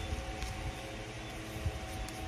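Steady low room hum and rumble, with faint handling of a small paper packet: a light tick about half a second in and a soft thump near the end.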